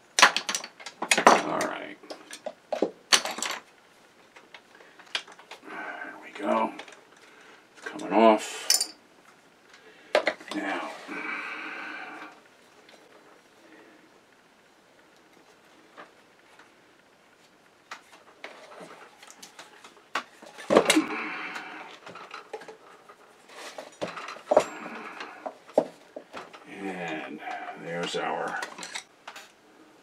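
Metal tools and loose parts clinking and knocking on a workbench while a vintage sewing machine head is handled and debris is brushed aside, with a quieter stretch about midway.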